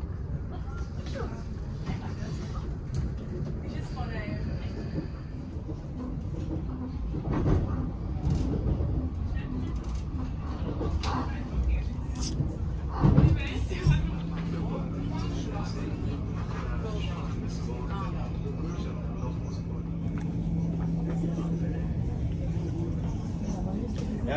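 Interior noise of a BLS Stadler MIKA RABe 528 electric multiple unit: a steady low rumble, with a few brief knocks and, a little past halfway, a steady electric hum that sets in and holds. Passengers' voices murmur in the background.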